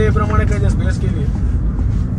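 Steady low rumble of a car driving, heard from inside the cabin, with a voice talking over it for about the first second.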